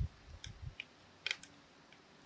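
Quiet, irregular metallic clicks and light knocks of a hand crank turning, wrapping fence wire in tight loops around itself at a terminal insulator. The sharpest clicks come right at the start and about a second in.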